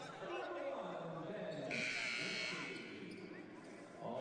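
Arena horn at the scorer's table sounding once for about a second, a steady buzz, signalling a substitution.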